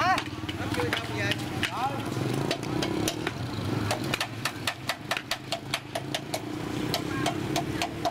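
A motorbike engine running steadily, with short bits of voices over it. From about the middle on, a run of regular sharp clicks or steps comes about two to three times a second.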